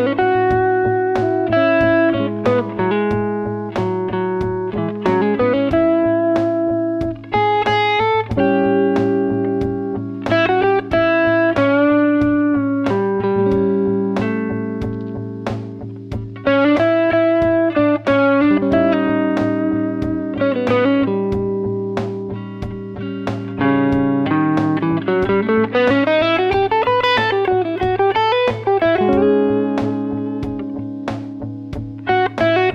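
Electric guitar (Fender Stratocaster) improvising single-note lines in A Ionian (major) over a looped backing of a held low A drone, a sustained chord and a drum beat. About halfway through it switches to A Mixolydian as the looped chord changes to a dominant 7. Near the end it plays quick rising and falling slides.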